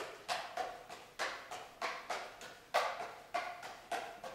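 Five juggling clubs being thrown and caught in a steady pattern: a regular clack of club handles landing in the hands, about three catches a second, each ringing briefly in a large echoing room.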